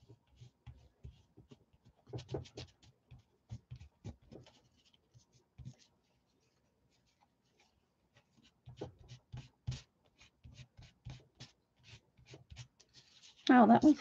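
Paper towel rubbing and scrubbing over a raised, gold-painted embossed surface in quick, scratchy strokes, wiping back the paint. The strokes pause for a couple of seconds in the middle, then resume.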